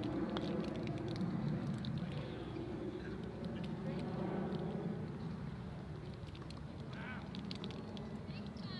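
Waterfowl calling, with a brief falling call near the end.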